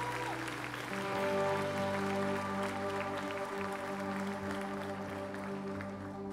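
Congregation clapping and applauding over a worship band's soft held chords, which change to a new chord about a second in.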